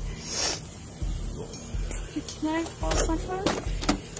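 Body-worn camera rustling and bumping against the wearer's uniform, with a few brief, faint, indistinct words in the second half.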